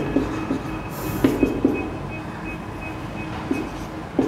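Whiteboard marker squeaking against the board in short strokes as lines and letters are drawn, the busiest cluster of strokes about a second in and a few more near the end.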